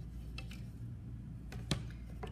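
Wooden slab-rolling guide strips and a wooden rolling pin being handled on a canvas-covered work board: a faint tap under half a second in and a sharper wooden knock near the end, over a steady low hum.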